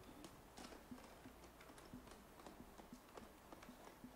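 Near silence: room tone with faint, irregular small clicks and knocks scattered throughout.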